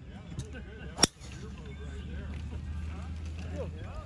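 A golf driver striking a teed ball: one sharp crack about a second in. Faint voices and a low steady hum go on around it.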